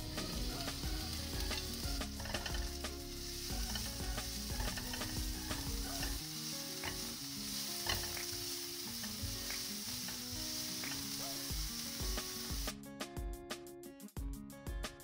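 Minced garlic and sliced red chillies sizzling in hot oil in a nonstick wok, stirred with a silicone spatula, with small scraping clicks. The sizzle cuts off suddenly near the end.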